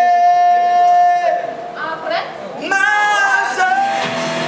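A person's voice, unaccompanied, holding one long high note for over a second, then a shorter note that bends in pitch near the end, echoing in a large hall.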